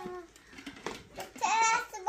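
A toddler babbling in a high voice: a short sound at the start, then a longer, louder one in the last half second or so.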